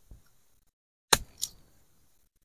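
Machete chopping cassava tubers off the stem: a faint knock at the start, then two sharp chops about a third of a second apart a little past the middle.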